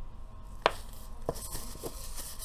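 Small makeup items handled close to the microphone: one sharp click about two-thirds of a second in, then two lighter taps, with a faint rubbing near the end.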